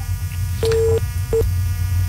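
Two telephone-line beeps at a single mid pitch, the first about half a second long and the second brief, over a steady low mains hum.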